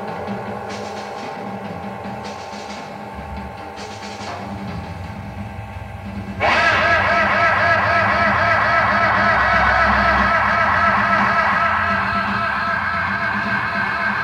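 Live rock band playing a slow, sustained instrumental passage, recorded on a bootleg reel-to-reel tape. Quieter held tones give way, about six seconds in, to a loud sustained chord with a wavering vibrato that comes in abruptly and holds.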